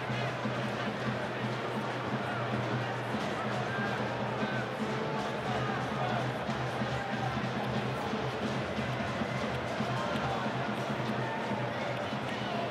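Steady stadium crowd noise with music playing, no single loud event.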